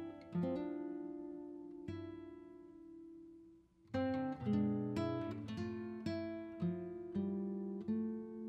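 Background music: acoustic guitar picking notes that ring and fade away, stopping briefly a little before the middle and then carrying on.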